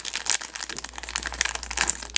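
Foil blind bag crinkling as hands open it and pull out the figure inside: a rapid, dense run of crackles.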